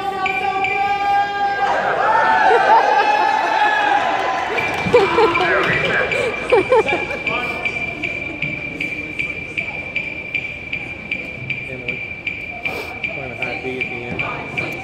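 A marching band holds a single pitched note that cuts off sharply about two seconds in, followed by students' voices calling and talking. From about four seconds in, a metronome ticks steadily, about two and a half beats a second, over a constant high beep.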